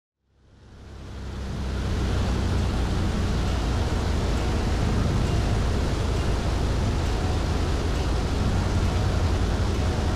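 Steady in-flight drone of a Maule M-5 light single-engine plane: low engine and propeller hum under a wash of air noise, fading in over the first two seconds.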